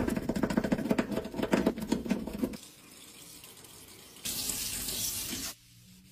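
A narrow bristle brush scrubbing in and out of a soapy stainless steel sink's overflow hole in quick wet strokes for about two and a half seconds. After a short quiet pause, water runs with a steady hiss for about a second before cutting off.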